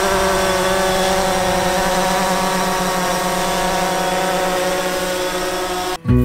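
DJI Phantom quadcopter hovering close by, its four propellers giving a steady buzzing whine made of several held tones.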